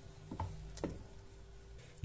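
Wooden spoon stirring thick puréed fava in a metal pot, giving a couple of soft knocks and squelches in the first second, over a faint steady hum.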